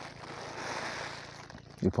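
Gloved hand scooping granular fertilizer out of a woven sack: a soft rustling hiss of granules and sack that fades out over about a second and a half.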